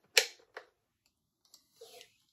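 Plastic parts of a full-face snorkel mask clicking as the snorkel tube is pressed onto the top of the mask: one sharp click just after the start, then a couple of faint clicks.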